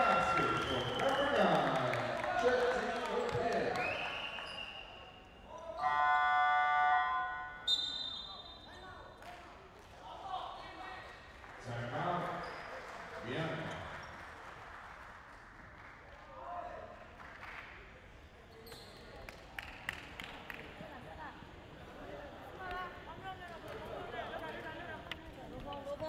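Indoor basketball game sound: a ball bouncing on the hardwood court and players' voices echoing in the hall. An arena horn sounds steadily for about a second and a half around six seconds in, marking a stoppage in play.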